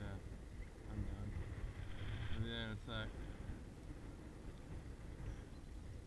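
Wind buffeting a small action-camera microphone as a steady low rumble, with a short voice sound about two and a half seconds in.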